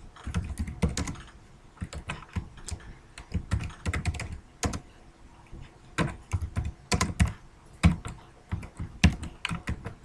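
Typing on a computer keyboard: irregular runs of keystrokes with short pauses, the longest about halfway through.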